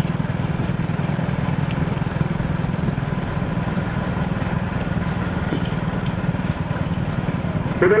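A vehicle engine running steadily at speed, a low drone with a fast even pulse, under wind and road noise.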